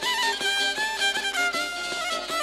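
Bosnian izvorna folk music on violin and šargija: the fiddle plays a melody of long held, sliding notes over the šargija's steady strummed rhythm.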